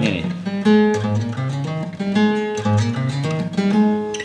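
Acoustic guitar played in a series of chords, a new chord sounding about every half second to a second, demonstrating the chords that go together in one key.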